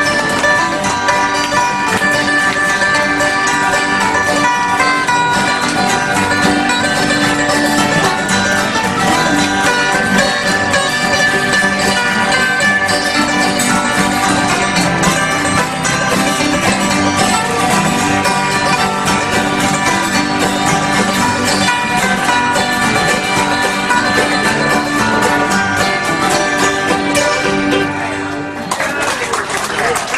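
Acoustic bluegrass band playing a hymn tune: several acoustic guitars strummed together with mandolin and an electronic keyboard. The playing eases off briefly near the end, then goes on.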